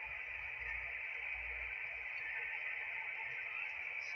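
Steady background hiss sitting in a fairly narrow upper-middle band, with a faint uneven low rumble underneath.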